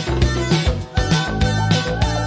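1980s Japanese pop song playing, with a steady drum beat and bass line.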